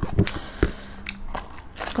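Close-up mouth sounds of biting into and chewing a crisp raw cucumber slice: a few sharp crunches near the start and another about two-thirds of a second in, then wetter chewing.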